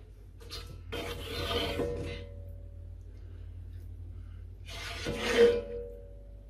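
A utensil scraping over the bottom of a cast-iron casserole pot through broth, used to fish out bits of food: two scrapes, one about a second in and a louder one near the end.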